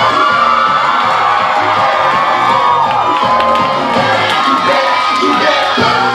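Audience cheering and whooping, with dance music playing underneath.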